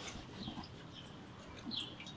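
A few short, high bird chirps, faint, spread across about two seconds over a quiet background.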